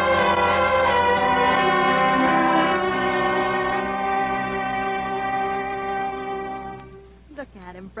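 Orchestral music bridge of held string chords, rising in at the start and fading away about seven seconds in: the transition between two scenes of a radio drama. A woman's voice begins just at the end.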